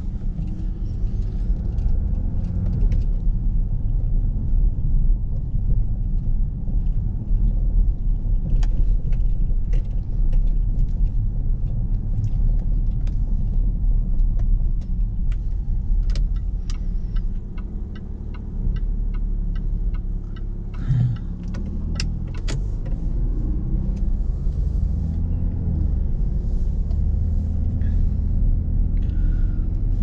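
Jaguar XF's 3.0-litre V6 diesel heard from inside the cabin while driving slowly: a steady low rumble of engine and road noise, with scattered light clicks and ticks.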